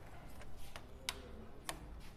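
Plastic snap clips of an HP laptop's top case (palmrest panel) clicking loose as it is pried off with a pry tool: four sharp clicks, roughly one every half second, the third the loudest.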